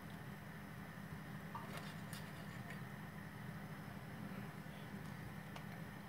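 Faint clicks of a knife and fork against a china plate as a plum dumpling is cut, over a steady low room hum.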